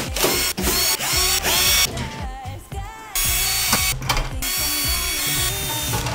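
Cordless drill-driver running in three short bursts as it backs out the screws of a rackmount server case's top cover. Pop music with a singing voice plays throughout.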